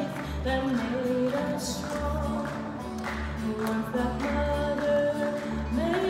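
Background music: a song with a sung vocal melody over a steady, regular bass beat.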